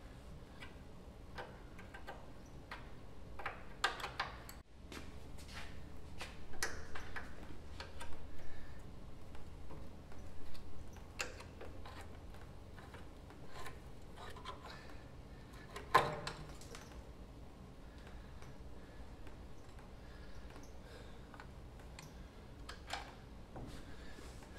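Scattered metal clicks and taps of hand tools working loose a drum-era truck's front brake caliper and brake hose, with one louder knock about two-thirds of the way through.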